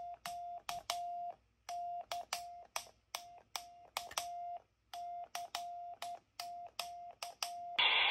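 Morse code (CW) sent on a Quansheng UV-K5 handheld: its steady mid-pitched sidetone beeps in dots and dashes through the radio's built-in speaker, keyed on a small QRP Nano key mounted on the radio, with a click at each key stroke. This is a CQ call.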